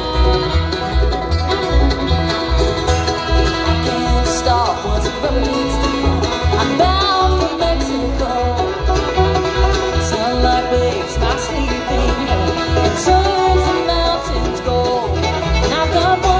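Bluegrass band playing live without vocals: banjo, acoustic guitar, fiddle and upright bass, with the bass keeping a steady pulse underneath.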